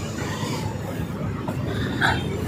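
Road traffic passing close by: a car driving past with a steady low rumble of engine and tyres.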